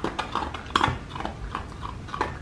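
A dog eating dry kibble from a bowl: a string of irregular crunches as it bites and chews.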